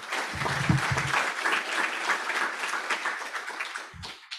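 Audience applauding, many hands clapping together, dying away near the end.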